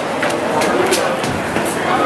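Steady loud city background noise with faint voices, broken by a few sharp knocks from a handheld camera jostled as its holder walks.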